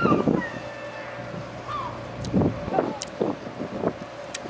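Wind rumbling on the microphone, with a few short murmured voice sounds scattered through it.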